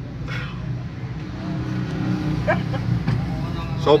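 A motor vehicle engine running with a steady low hum that gradually grows louder. A man starts speaking right at the end.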